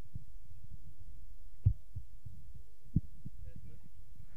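Faint distant voices over a steady low rumble, with two short thumps, one about one and a half seconds in and one about three seconds in.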